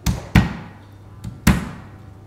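Three sharp thuds as a palm strikes the flat of a chef's knife blade, crushing a garlic clove against a wooden butcher's block. Two come in quick succession and the third about a second later.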